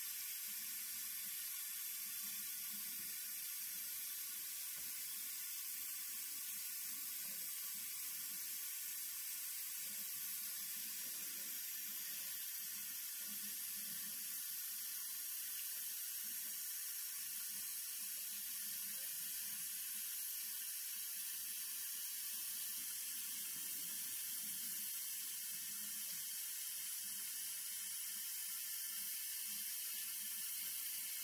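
A tap running steadily, the stream splashing over a brass photoetch fret held in gloved fingers as Brasso residue is rinsed off it.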